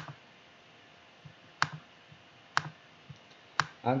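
Computer mouse clicking: four sharp clicks about a second apart, with a few fainter clicks between them.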